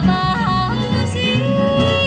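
Live Hawaiian song: a woman singing in a high voice that steps between notes and then holds one long note, over strummed ukuleles and acoustic guitar with a steady low rhythm underneath.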